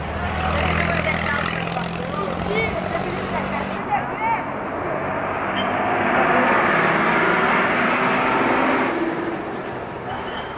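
Street traffic: a motor vehicle's engine hums low for the first couple of seconds, then traffic noise swells, loudest from about six to nine seconds in, with indistinct voices mixed in.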